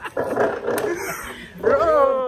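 Clothing rustling and brushing against the phone's microphone as two men hug, then near the end a man's loud, drawn-out excited cry of greeting that slides down in pitch.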